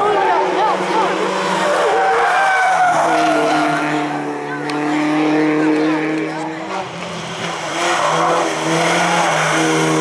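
Peugeot 106 hillclimb car's engine running hard through tight bends, its pitch shifting as the driver lifts and gets back on the throttle, with tyres squealing in the corners.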